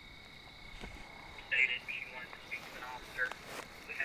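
Faint police-scanner radio traffic: a thin, narrow-sounding dispatcher's voice speaking a short phrase in the second half, over a steady high-pitched tone.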